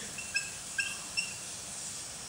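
Marker squeaking on a whiteboard during writing: about five short, high squeaks in the first second or so, over a steady faint hiss.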